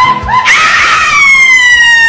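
A woman screaming: a few quick short cries, then about half a second in one long high scream whose pitch slowly falls.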